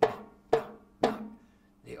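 Three knocks on a banjo, about half a second apart, each ringing briefly: a knock-on-the-door effect played on the instrument.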